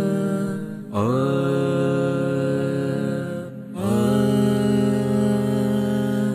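Wordless sung intro to a devotional song: voices hold long 'aah' notes. A new note slides in about a second in and another just before four seconds.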